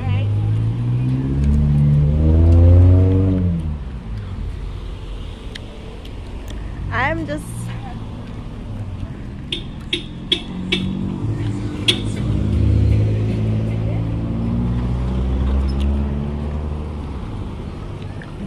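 Car engine pulling away, its pitch rising over the first few seconds, then another car going by in the second half. A few sharp clicks come in between.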